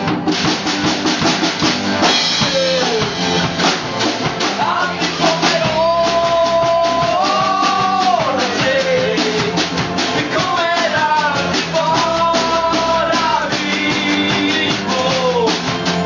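Rock band playing live: strummed acoustic guitars over a steady beat with drums, and a male singer holding long notes, one about six seconds in and another about twelve seconds in.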